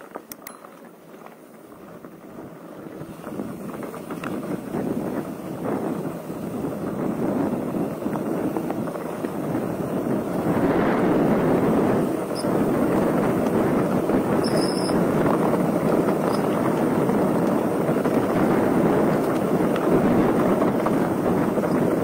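Mountain bike rolling fast down a rough gravel dirt road: tyre crunch and rattle mixed with wind on the microphone, building as the bike picks up speed over the first ten seconds or so, then steady. A brief high squeak cuts in about halfway.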